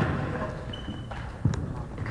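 Two dull thumps ringing in a gymnasium hall, one right at the start and another about one and a half seconds in, with a short high squeak between them and faint voices behind.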